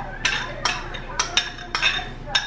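A metal spoon clinking and scraping against a small cup as it is used to empty grated carrot into a bowl: about half a dozen irregular, ringing clinks.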